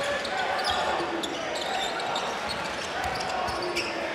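Steady murmur of a large indoor basketball crowd, with a basketball being dribbled on the hardwood court.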